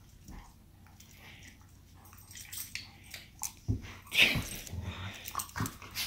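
Two dogs play-fighting: scattered short, irregular dog noises and scuffling, quiet at first and busier in the second half, with the loudest around the middle and near the end.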